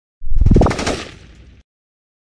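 Channel intro sound effect: a sudden loud burst of rapid rattling strikes with a rising tone through it, dying away over about a second and stopping abruptly.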